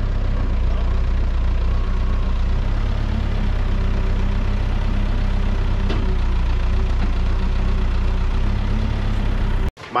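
Telehandler's diesel engine idling steadily with a deep, even hum; it stops abruptly near the end.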